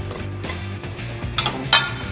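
Steady background music with a few short clinks of plates and cutlery, the loudest near the end.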